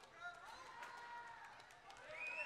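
Near silence, with faint, distant voices.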